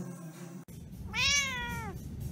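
A domestic cat meowing once, starting about a second in, in a single call that rises and then falls in pitch.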